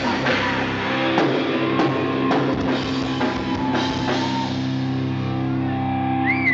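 Live rock band playing instrumentally: electric guitar and drum kit, with sharp drum hits over the first few seconds, then a long held chord from about four seconds in.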